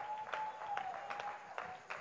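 A few people clapping their hands in a steady rhythm, about two to three claps a second, with one faint held tone underneath that fades out near the end.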